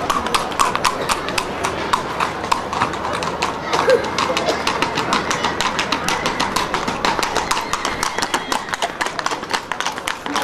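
Horses' hooves clip-clopping on hard ground in many quick, irregular strikes, with voices in the background.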